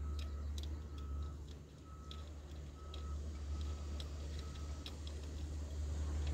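A vehicle's reversing alarm beeping in short even beeps, about one a second, over a steady low engine drone, with faint clicks. The beeps stop near the end.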